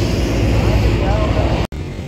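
Steady outdoor background rumble and hiss with faint voices in it, broken off by an abrupt cut about 1.7 s in.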